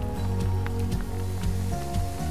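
Background music with sustained chords. Beneath it, a faint crackling fizz of dilute acid bubbling on limestone-rich soil, the sign that calcium carbonate is present.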